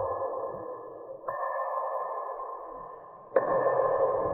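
A bell-like chime struck three times, each ring dying away before the next, with new strikes about a second in and near the end.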